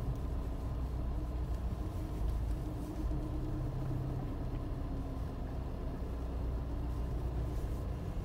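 Steady low rumble of a car's engine running, heard from inside the cabin.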